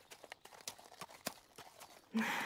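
Faint horse hooves clip-clopping, about three hoof strikes a second, from a horse being ridden.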